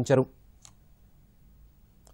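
A newsreader's voice finishes a sentence just after the start, then near silence follows, broken by one faint click.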